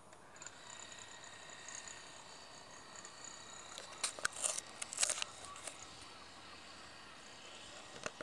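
Handling noise from a handheld camera: fingers scraping and crackling against the body, heaviest about four to five seconds in, over a faint steady high whine.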